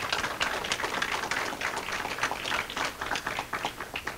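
Audience applauding, the claps thinning out near the end.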